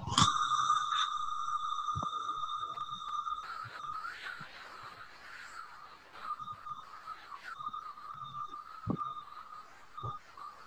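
A steady high-pitched electronic tone with overtones starts suddenly and holds level, loudest for the first three and a half seconds and then continuing more faintly. A couple of faint clicks sound over it.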